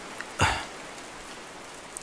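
Steady rain falling, a sound effect under the drama, with one short, sharp sound about half a second in.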